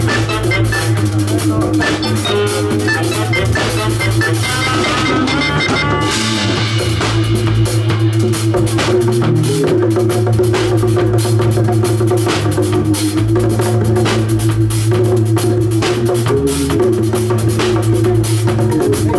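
Live reggae band playing an instrumental passage: electric bass line under drum kit and congas, with a saxophone melody over roughly the first six seconds, after which the drums and cymbals carry the groove.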